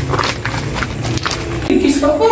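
Footsteps walking, a run of short clicks, over a low steady hum that stops near the end.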